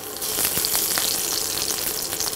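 Fresh curry leaves sizzling in hot oil with mustard and cumin seeds in a kadhai: a tempering for poha. The sizzle jumps up just after the start, then stays steady with small scattered pops.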